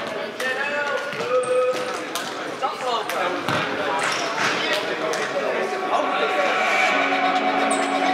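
A futsal ball bouncing with sharp thumps on the wooden floor of a sports hall, amid players' voices and a couple of short sneaker squeaks. A steady tone comes in about six seconds in.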